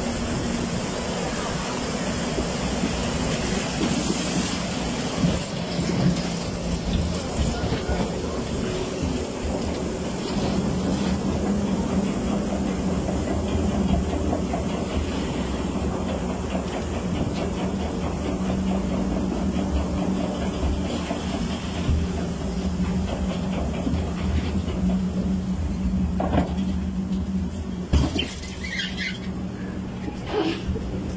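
Log flume lift hill conveyor carrying the boat up the incline: a steady mechanical hum with a fast, even rattle of the belt and rollers.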